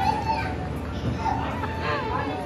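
Several people, women and children, talking over one another in a room.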